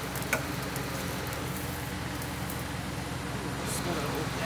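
A flatbed tow truck's engine running steadily at a low, even pitch while its winch takes up the cable on the car, with a single sharp click about a third of a second in.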